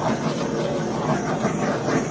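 Small handheld torch flame running with a steady hiss, swept over a wet epoxy resin coat to pop the surface bubbles.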